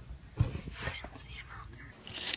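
A person whispering, with a single bump about half a second in.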